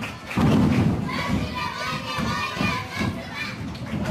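Wrestlers' boots stomping on the ring mat: several heavy thuds, the loudest about half a second in. Spectators shout over them.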